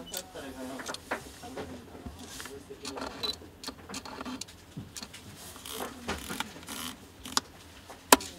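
Handling sounds of a Fujinon XF 23mm F1.4 R lens on a camera body: gloved fingers turning its focus and aperture rings, giving irregular small clicks and rubs, with one sharper knock near the end.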